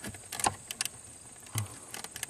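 Scattered light clicks and small rattles of a hand working among the plastic wiring connectors and harness under a dashboard, feeling for a connector to unplug.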